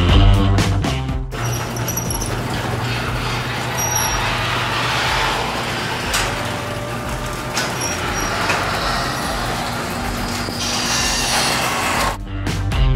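Rock music cuts off about a second in, giving way to a steady mechanical running noise with a low hum: an overhead sectional garage door moving on its electric opener.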